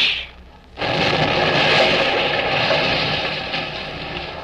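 Radio-drama sound effect of a tank cannon blast into a tunnel: a sudden rushing noise that starts about a second in, holds, then slowly dies away.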